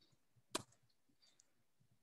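A single short click about half a second in, a computer input click that advances the slideshow to its next bullet; otherwise near silence.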